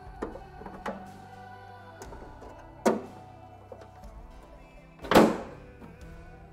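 A car bonnet slammed shut, one loud thump about five seconds in, the loudest sound here, over background music. A sharper knock comes about three seconds in.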